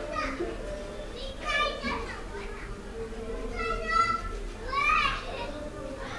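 Children's voices playing and calling out, with high-pitched shouts about one and a half, four and five seconds in.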